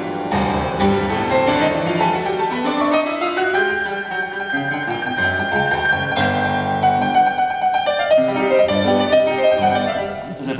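Grand piano playing a boogie-woogie number, with a rising run of notes about two seconds in.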